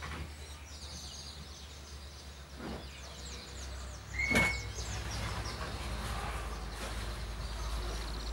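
Birds chirping in short, quick falling calls over a quiet, steady background hum, with a single sharp knock and a brief squeak about four seconds in.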